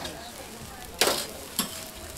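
Jeon frying on a flat steel griddle, a steady sizzle, with two sharp scrapes of a metal spatula on the griddle, about a second in and again half a second later.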